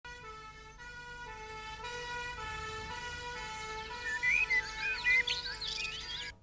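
Two-tone emergency siren switching between two pitches every half second or so, slowly growing louder. Birds chirp over it in the last two seconds.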